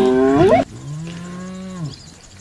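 Two long, moaning animal calls. The first rises in pitch and cuts off abruptly; the second is lower, holds steady, then falls away near the end.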